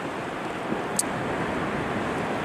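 Steady wash of sea surf with some wind, and one brief faint click about a second in.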